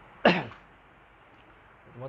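A man clears his throat with one short, sharp cough about a quarter second in, over a steady faint hiss.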